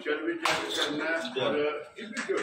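Voices talking, with a few sharp metallic clinks.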